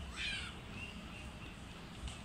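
A crow caws once, briefly, just after the start, with faint bird chirps in the background.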